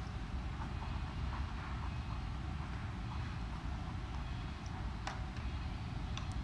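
Steady low background rumble with faint, scattered soft clicks, and one sharper click about five seconds in.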